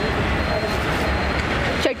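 Steady road traffic noise, a low rumble with no distinct events.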